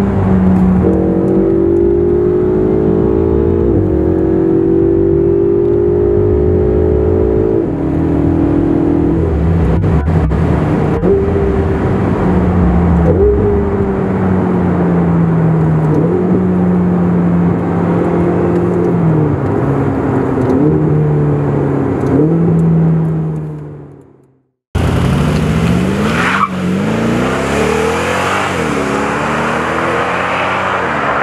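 Car engine running with a steady drone whose pitch steps down and bends a few times, fading out to silence about 24 seconds in. After a sudden cut, a car engine revs up with rising pitch.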